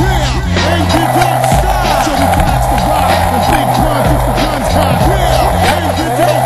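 Skateboard wheels rolling on pavement, from under a second in, under hip hop music with a heavy bass line.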